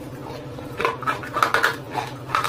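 Close-miked mouth sounds of biting and crunching a hard, dark roasted lump: several short, crisp crunches in quick succession from about a second in.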